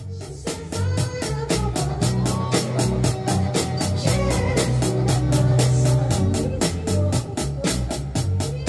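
A drum kit beat played with sticks along to a backing song with organ and bass, the strokes falling steadily about four a second.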